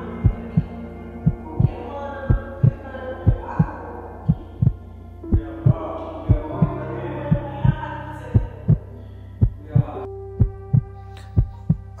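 A slow, steady heartbeat, a double thump about once a second, over a low hum and soft background music.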